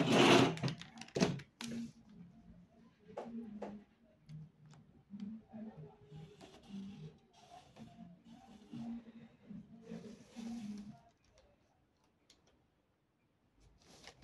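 Brief loud handling noise of paper and tools at the start, then a marker drawn along a metal ruler on brown pattern paper: faint scratchy strokes around the middle and again about ten seconds in.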